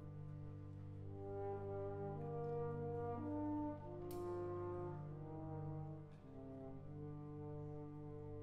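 Wind band playing a soft, slow passage: held chords and a slowly moving line of long notes over a sustained low bass, with French horn and clarinets playing. A brief click about halfway through.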